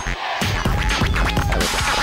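Turntable scratching: a record pushed back and forth in quick strokes over a heavy electronic beat, part of a live DJ mix. The beat drops out for a moment just after the start.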